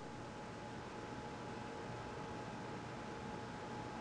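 Faint steady hiss of room tone with a faint, thin steady hum; no distinct sound stands out.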